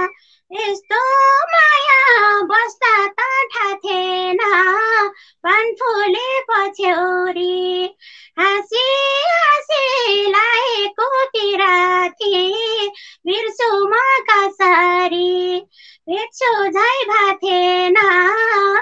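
A woman singing a Nepali dohori folk song solo and unaccompanied in a high voice, pausing briefly between phrases.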